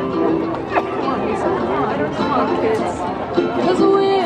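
Ukulele playing with audience chatter throughout. Near the end a singing voice comes in on a held note.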